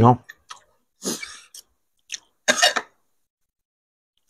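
A spoken word ends at the very start, then eating sounds come in two short noisy bursts, about a second in and again near three seconds: spoons and forks working food on plates, and chewing.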